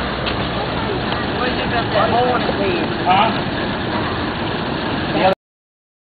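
Steady machine-like rumble and hiss, with people's voices talking over it around the middle; the sound cuts off abruptly about five seconds in.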